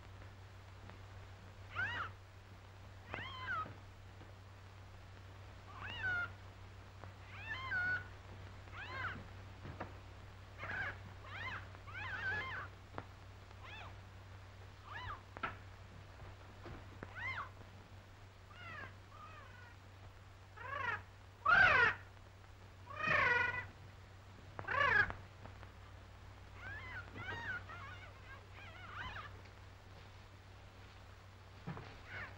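A cat meowing over and over, the calls bending up and down in pitch, about one every second or two; the three loudest yowls come about two-thirds of the way through. A steady low hum runs underneath.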